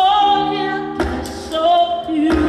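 Live female vocal holding long sung notes with vibrato over backing music with sustained chords. A single sharp percussive hit lands about halfway through.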